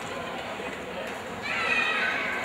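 Indistinct voices of players and spectators talking across an open football ground, with a short high-pitched call near the end.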